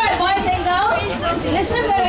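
Speech only: a woman talking into a microphone over a PA, with chatter from a crowd of children.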